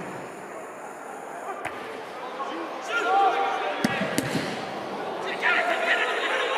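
A football being kicked on a pitch, with a few sharp thuds: one about a second and a half in and a pair around the four-second mark. Players shout to each other between the kicks.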